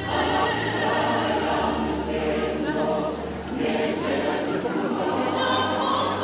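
Church choir singing a gospel song, many voices in harmony, with a brief dip in loudness about halfway through.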